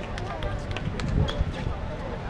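Indistinct voices of players on an outdoor basketball court, with running footsteps and scattered short taps and clicks.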